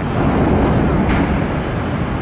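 Steady, loud, low rumbling noise of a large liquefied-gas plant fire burning, as recorded in a phone video, swelling slightly in the first second.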